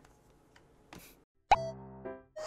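A brief pause, a short soft swish about a second in, then an edited sound-effect sting that starts sharply and holds a pitched tone, opening a music intro.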